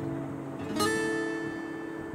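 Background music: acoustic guitar, a plucked chord ringing out and fading, with a new chord struck a little under halfway through.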